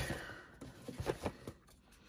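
Hands turning and handling a cardboard toy box: a soft rubbing rustle that fades, then a few faint light taps, going almost quiet near the end.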